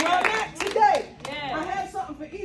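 A small audience clapping, the claps dying away within the first half second, then women's voices calling out in rising and falling exclamations.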